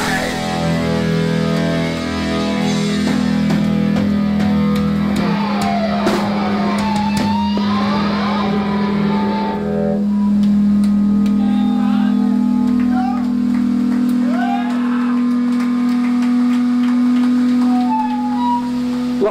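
Electric guitars and bass left ringing through the amplifiers as a steady held drone after the band stops playing, with a cymbal wash fading about halfway and scattered shouts from the room.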